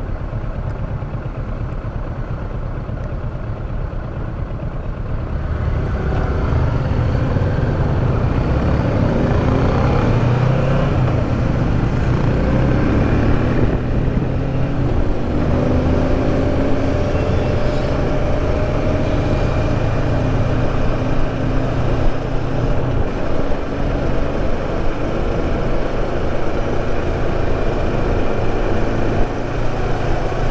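The parallel-twin engine of a Kawasaki Versys 650 idles, then pulls away about five seconds in. It climbs in pitch again and again as it accelerates up through the gears, then runs steadily at cruising speed.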